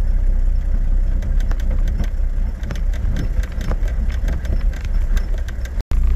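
Four-wheel-drive vehicle driving on a dirt track, heard from inside the cab: a steady low rumble of engine and tyres with frequent short rattles and knocks from the rough surface. The sound drops out briefly near the end.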